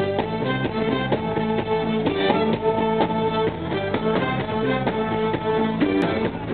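Live soul band playing an instrumental vamp with a steady drum beat and sustained chords.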